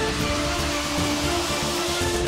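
News-channel intro sting: electronic music with a rushing, whoosh-like noise over steady held tones.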